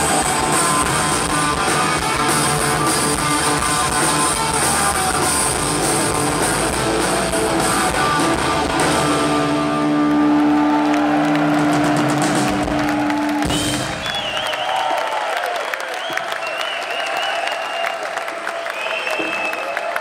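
Punk rock band playing live, with electric guitars, bass and drums, brings a song to its end. A final held note rings out and cuts off about fourteen seconds in, followed by the crowd cheering with whistles.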